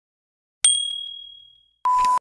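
Electronic end-screen sound effects: a sharp, bright ding about half a second in that rings and fades away over about a second, followed near the end by a short steady beep.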